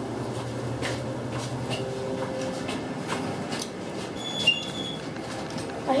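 Kone elevator car in operation: a steady low machine hum that fades out in under two seconds, scattered light clicks, and a short high beep a little past four seconds in.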